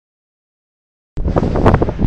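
Dead silence for about the first second, then loud wind buffeting the microphone with a rough, rumbling rush that starts suddenly at a cut.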